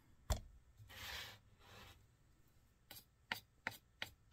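Tabletop handling sounds while working with clay slip: a single knock about a third of a second in, two short scraping rubs, then a run of light clicks near the end as a paintbrush works in a plastic jar of slip.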